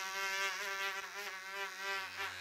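A steady low buzzing tone rich in overtones that waver slightly, the sound effect of an animated logo sting.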